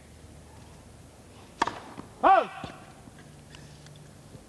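A tennis serve struck with a single sharp crack of racket on ball, followed about half a second later by a loud shouted line call whose pitch rises and falls, calling the serve out.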